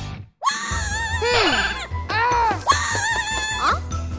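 Cartoon background music with a pulsing bass beat, starting after a brief silent gap near the start. Over it come a cartoon character's wordless vocal cries, sliding up and down in pitch.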